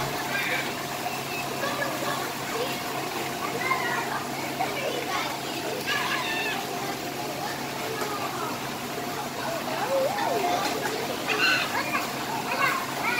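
Children's voices chattering and calling out over running, splashing water at an indoor water-play table, with a steady hum underneath.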